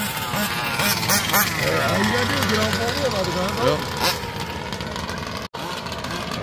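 Small two-stroke engine of a gas-powered 1/5-scale RC car, revving up and dropping back again and again as it drives, with voices over it. The sound drops out for an instant about five and a half seconds in.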